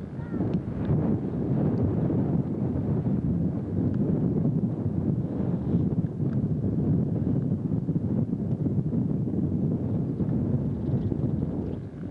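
Steady, rough rumble of wind buffeting the microphone, with faint voices underneath.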